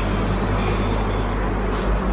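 Steady low electrical hum with a faint high-pitched whine over it, and a brief rustle near the end.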